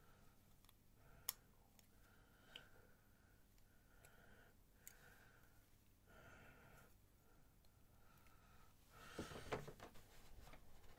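Near silence with a few faint clicks of small parts being handled on a desk, and a short burst of handling rustle near the end as a small circuit board is picked up.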